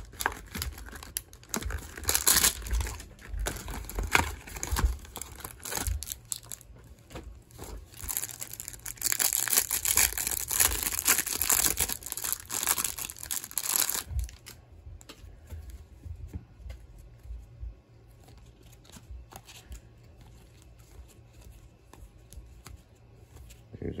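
Cardboard hanger box torn open and the plastic wrap torn and crinkled off a stack of trading cards, in repeated noisy bursts. About fourteen seconds in it drops to quieter handling of the cards.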